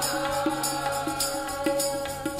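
Sikh kirtan: harmoniums playing sustained chords over a steady tabla beat of about two strokes a second, with singing voices.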